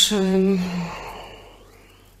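A woman's drawn-out last word trailing off into a long breathy sigh that fades out about a second and a half in.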